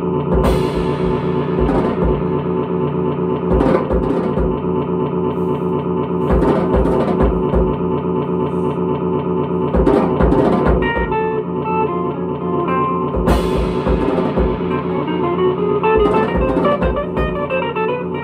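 Electric guitar and drum kit playing live together: sustained, ringing guitar notes over kick drum and cymbals, with cymbal crashes about half a second in and again about thirteen seconds in.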